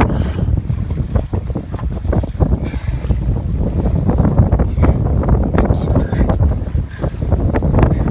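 Strong wind buffeting the microphone on an open boat at sea: a loud, gusty low rumble throughout, with water washing around the hull beneath it.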